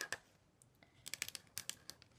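Black permanent marker being drawn along the edge of a design on cardstock: a quick run of faint clicks from the pen tip on the card about a second in.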